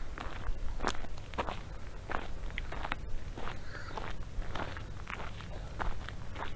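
Footsteps of a person walking outdoors, a steady pace of roughly two steps a second.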